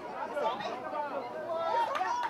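Several voices talking and calling at once, overlapping and indistinct, like sideline chatter among a small crowd at a football match.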